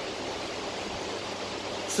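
Steady, even hiss of background noise, with no speech and no distinct events.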